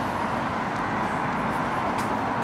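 Steady traffic noise of a city street, an even hiss with no single vehicle standing out.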